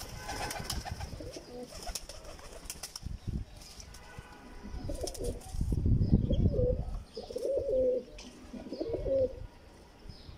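Domestic pigeons cooing, with repeated coos through the second half. Wing flaps and rustles come early, and there is a low rumble in the middle.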